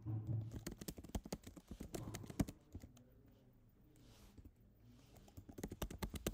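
Computer keyboard typing: a quick run of keystrokes for the first two and a half seconds, then a few scattered keys, picking up again near the end.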